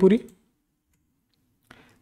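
A man's word trailing off, then near silence with one faint click shortly before he speaks again.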